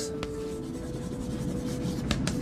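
Chalk writing on a chalkboard, scratching with a faint tap, over soft background music that holds steady tones.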